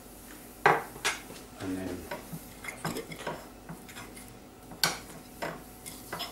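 Metal fork clinking against a ceramic plate: a string of irregular sharp knocks, the loudest about half a second in and again near the end.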